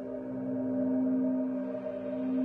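Frosted quartz crystal singing bowls ringing together: a strong, low, steady tone with fainter higher tones above it, slowly swelling and fading in loudness.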